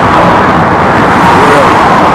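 Loud, steady road traffic noise, with faint voices underneath.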